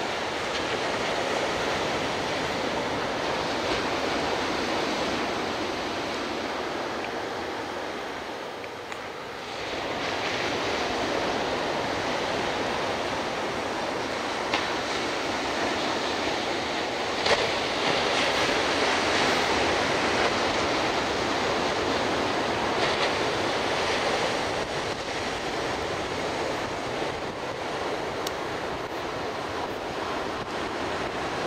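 Surf breaking on a sandy ocean beach, a steady wash of noise, with wind gusting on the microphone. The level dips briefly about nine seconds in, and a single short sharp click comes just past halfway.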